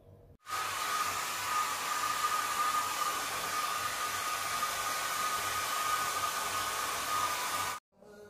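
Handheld hair dryer blowing: a steady rush of air with a high whine. It starts suddenly about half a second in and cuts off just before the end.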